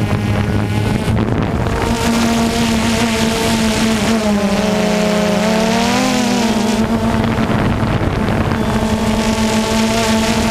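Steady drone of a small propeller-driven aircraft engine in flight, over wind rush. Its pitch dips and comes back up midway, as the throttle is eased and reopened.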